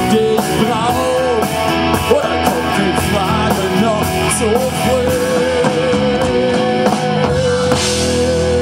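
Live rock band playing through a PA: drum kit, electric guitars and a male lead voice. From about five seconds in, a single high note is held steadily over the band.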